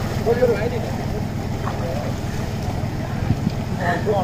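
Steady low wind rumble on the microphone, with faint distant voices about half a second in.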